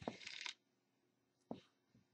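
Near silence on a poor internet video call: a short faint burst of garbled, broken-up noise at the start, then a single faint click about a second and a half in.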